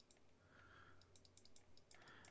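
Near silence: a few faint computer mouse clicks in the second half over a low steady hum.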